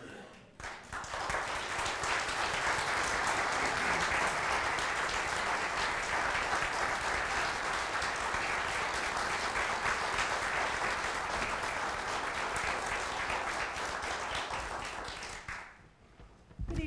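Audience applauding: the clapping starts about a second in, holds steady, and dies away near the end.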